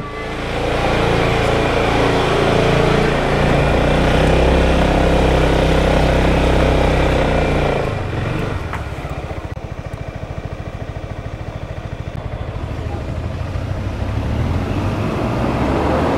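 Motorcycle pulling away under throttle, its engine loud and mixed with a dense rush of road noise for about eight seconds. It then eases off to a slower, even pulsing run.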